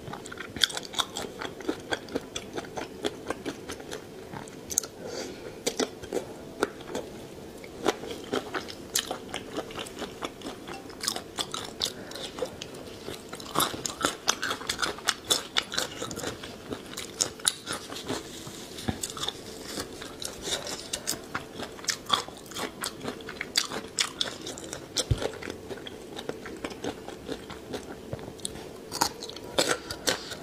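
Close-miked eating sounds of spicy marinated raw shrimp being chewed: wet chewing with a dense, irregular run of sharp clicks and crunches.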